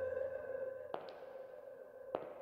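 Film trailer soundtrack: a sustained ringing tone, slowly fading, with a faint click about a second in.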